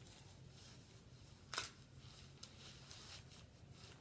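Near silence with faint rustling from someone moving close by, and one sharp click about one and a half seconds in.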